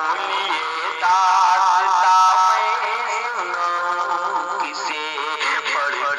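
A naat, an Islamic devotional song, sung by a solo voice with long wavering held notes. The singing gets louder about a second in.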